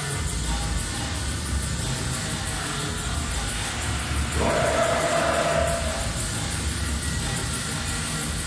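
Drum and bass DJ set playing, with heavy bass and fast, evenly repeating hi-hats. A held higher note with overtones comes in about halfway through and lasts over a second.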